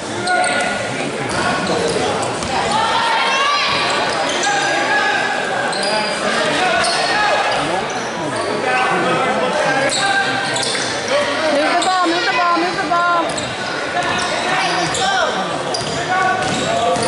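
Basketball game sounds in an echoing gym: the ball bouncing on the hardwood floor, short squeaks of shoes, and players and spectators calling out throughout.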